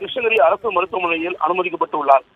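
Speech only: a voice talking continuously in Tamil, thin and band-limited as over a telephone line.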